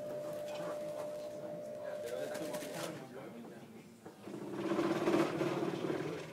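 Indistinct chatter of people waiting in a lecture hall, with a steady thin tone through the first half. The voices grow louder in the last couple of seconds.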